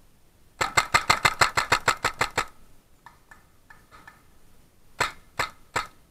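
A paintball marker firing a rapid string of about fifteen shots, some eight a second, then a few scattered single shots, and three more near the end about half a second apart.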